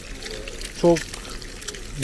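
Sucuk slices and eggs frying in a pan with a steady sizzle, as another raw egg is cracked and slid into the hot fat.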